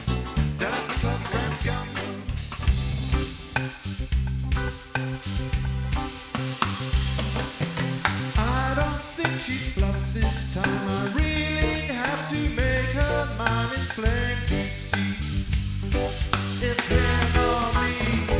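Live pop music from a keyboard and drums duo: a drum kit playing a steady beat under keyboards and keyboard bass, with a man singing lead, his melody line coming in strongly from about halfway through.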